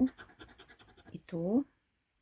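A thin metal tool scraping the silver coating off a paper scratch card in quick, short strokes, about ten a second. The scraping stops abruptly near the end.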